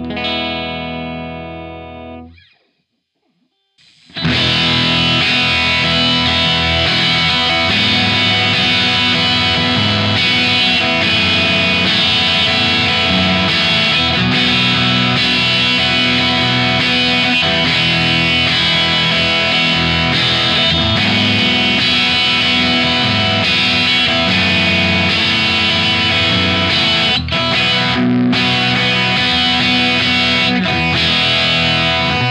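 Gibson Les Paul through a Vox AC15C1 valve combo amp. A held chord rings and fades out over the first two seconds. After a short silence, the amp is played cranked, with its volumes and tone controls at full, giving a heavily overdriven, continuous electric guitar sound.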